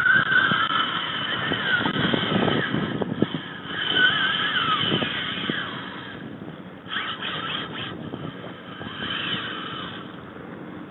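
Spinning reel's drag squealing in wavering bursts as a hooked fish pulls line off it, once at the start and again about four seconds in. A few knocks of the rod being handled, and a quick run of clicks near the end.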